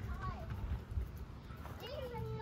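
A toddler's short wordless vocal sounds: a brief one just after the start and a longer one near the end that rises, then holds. Light crunching footsteps on wood-chip mulch sound underneath.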